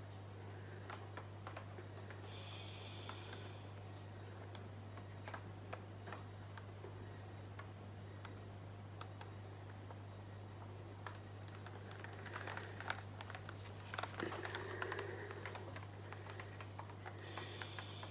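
Faint scattered clicks and taps from a paint-covered canvas being handled and tilted by gloved hands, over a low steady hum; the clicks come more often about two-thirds of the way through.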